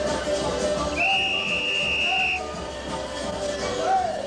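Happy hardcore rave music playing over a club sound system. About a second in, a single steady, high whistle tone sounds over the music for a little over a second.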